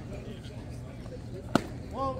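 A pitched baseball smacking into the catcher's mitt: one sharp pop about one and a half seconds in, over faint background chatter.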